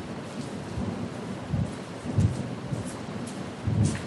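Steady room hiss with irregular low rumbles every second or so, the background of a poor-quality recording made in a seminar hall.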